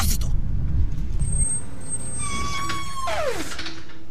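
Outro skit of a hip-hop track: a low bass beat under spoken samples stops about a second and a half in. Then a high held tone sounds and slides sharply down in pitch near the end.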